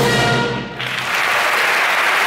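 A symphony orchestra's final held chord ends a little under a second in, and the audience at once breaks into applause that continues.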